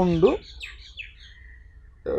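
Faint songbird chirps: a few quick high notes, then a thin held whistle-like note, after a man's voice stops.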